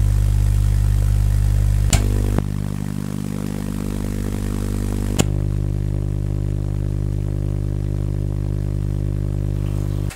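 Base-fed vacuum tube Tesla coil running off an unrectified microwave oven transformer, ballasted, its spark discharge buzzing loudly and steadily at mains frequency. Two sharp cracks come about two and five seconds in, and the buzz cuts off suddenly at the end.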